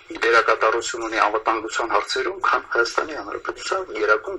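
Speech only: a man talking in Armenian, the sound thin and cut off at the low end as if played back through a speaker.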